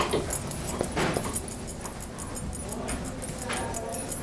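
A few short, whimper-like animal sounds, the clearest about three and a half seconds in.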